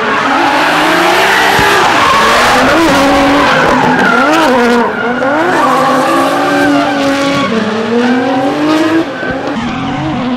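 Two drift cars sliding in tandem, engines revving hard with pitch rising and falling as the drivers work the throttle, over steady tyre screech. The revs drop briefly about halfway through and again near the end.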